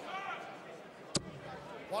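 A single sharp thud about a second in, a dart striking the bristle dartboard, over faint voices in a large hall.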